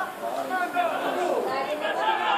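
Indistinct overlapping voices of football players and onlookers calling out and chattering over one another during a match.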